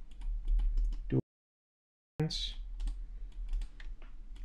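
Computer keyboard typing and mouse clicks, scattered irregular clicks. The sound cuts out completely for about a second in the middle.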